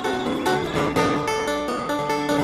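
Background music: an acoustic guitar picking a run of notes.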